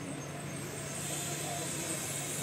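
Street background noise: a steady hum of traffic with a hiss that grows a little louder about half a second in.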